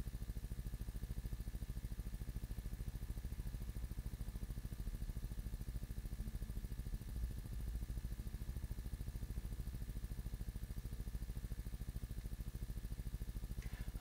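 Steady low electrical hum with a faint buzz.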